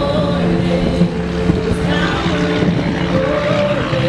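Live worship music: female singers holding long notes over sustained instrumental chords.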